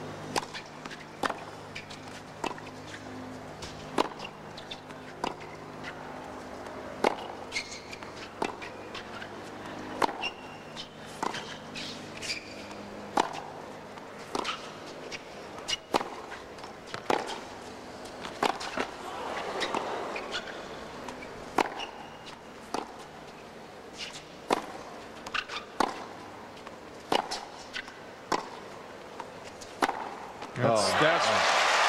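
Tennis ball struck back and forth in a long baseline rally on a hard court: sharp racket hits and ball bounces about once a second, over a low crowd background.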